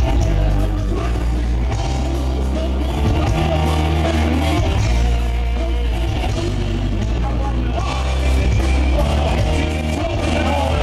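A rock band playing live and loud, with heavy bass, electric guitar, drums and a lead vocal through the PA.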